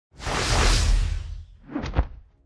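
Channel-intro whoosh sound effect: a long swoosh over a deep rumble that fades away, then a second, shorter swoosh swelling up near the end.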